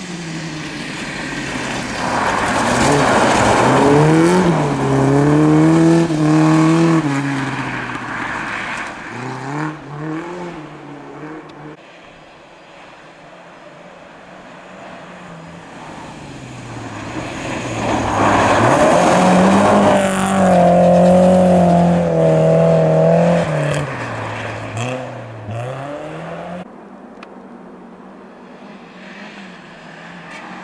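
Two Volvo 240 rally cars passing one after the other on a snow stage, engines revving hard and shifting gears, the pitch stepping up and down. Each pass is loud for several seconds, the first starting about two seconds in and the second a little past halfway, with quieter engine sound between and after.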